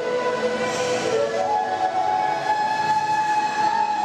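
Concert flute played solo in slow, held notes: a lower note, then a step up about a second and a half in to a long held higher note.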